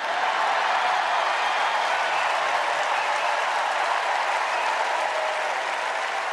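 Large convention crowd applauding, starting abruptly and holding steady.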